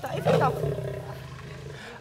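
Asian lioness growling: a low, pulsing rumble that is loudest in the first half-second and slowly fades.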